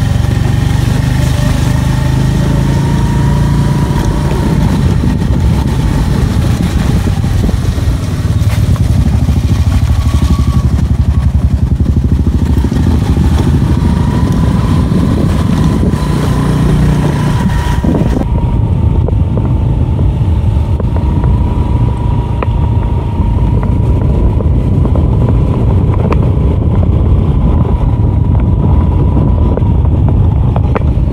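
Motorcycle engine running steadily while riding, a loud low rumble with a thin steady whine above it throughout.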